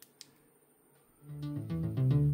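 Music starting from a stereo pair of opened Tronsmart Mirtune H1 portable Bluetooth speakers: after a second of near silence with a couple of faint clicks, the track fades in halfway through and grows louder.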